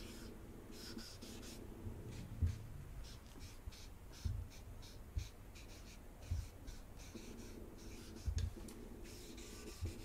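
A large marker scratching and squeaking across sketchbook paper in a run of short, quick strokes. Several dull thumps come in between, the loudest about two and a half seconds in and again near the end.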